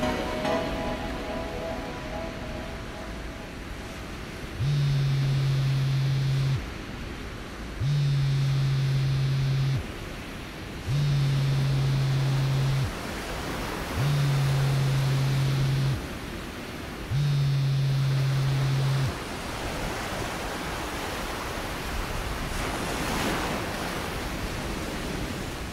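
Steady sea-surf and wind ambience after the last notes of the song die away. Over it, a low buzzing tone sounds five times at even spacing, each lasting about two seconds with about a second between.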